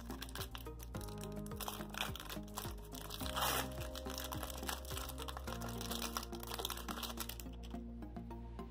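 Background music of steady sustained chords, over crinkling and light clicking from a trading-card pack wrapper and cards being handled, with a louder rustle about three and a half seconds in.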